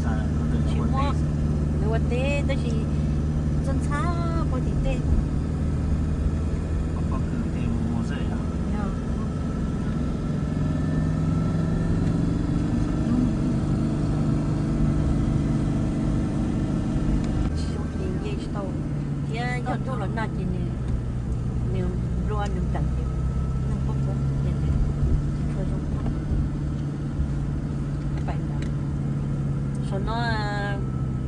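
Car engine and road noise heard from inside the cabin while driving: a steady low drone whose pitch rises a little about twelve seconds in and drops back about six seconds later.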